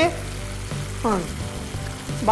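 Mutton and potato curry sizzling in a kadai on a gas burner, a steady hiss. A short falling vocal sound comes about a second in, over faint background music.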